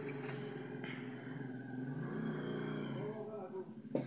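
A motor engine running steadily, its pitch shifting slightly about halfway through.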